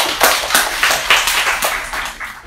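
Audience applauding: many people clapping together, fading near the end.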